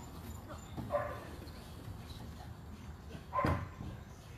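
Young border collie giving two short barks, one about a second in and a louder one near the end.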